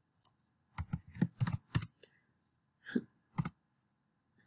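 Typing on a computer keyboard: a quick, irregular run of keystrokes through the first two seconds, then two more clicks about a second later.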